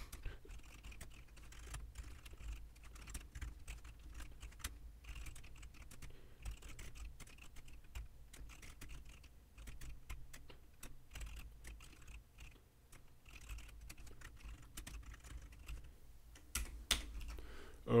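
Typing on a computer keyboard: a steady stream of quick, uneven keystrokes, with a few louder clicks near the end.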